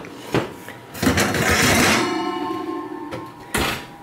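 Kitchen handling at an electric range as a baked cake is taken out and the oven turned off: a few light clicks, a rush of clattering noise, a steady tone lasting about a second, then a single sharp knock near the end as the metal cake pan is set down on the glass stovetop.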